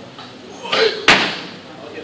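A weightlifter's clean: a single sharp slam about a second in as his feet stamp down on the wooden platform and the loaded barbell lands in the front rack, with a short louder noise just before it as he pulls.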